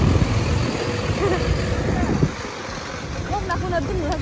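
Street traffic on a wet road: a steady low rumble of vehicle engines and tyres, with voices faintly in the background.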